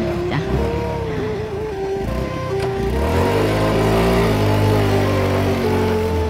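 Motorcycle engine running and rising in pitch from about three seconds in as it pulls away towing a loaded passenger cart, with background music over it.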